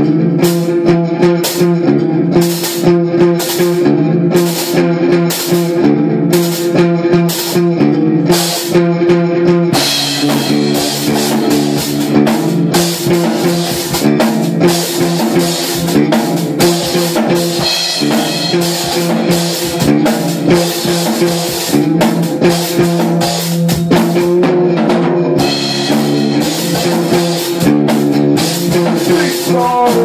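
Live instrumental rock jam on guitar and drum kit, without singing. A repeated guitar riff plays over light, regular taps, and the full drum kit comes in about ten seconds in.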